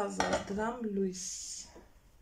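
A woman's voice talking for about the first second, then a short high hiss and a lull.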